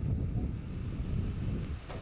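Low, irregular rumble of wind buffeting the microphone outdoors.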